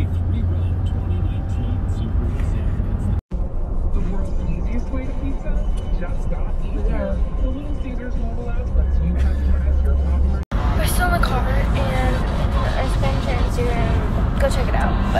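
Car cabin road rumble under music and voices, cut off abruptly twice by edits, about three seconds in and about ten and a half seconds in.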